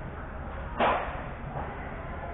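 A short, sharp scrape of a hockey goalie's skate blade on the ice close by, about a second in, over the steady low hum of the rink.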